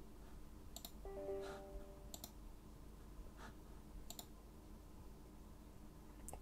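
Computer mouse button clicks: three sharp double clicks spread over a few seconds, with fainter clicks between. A brief soft electronic tone of several steady pitches sounds about a second in, lasting about a second.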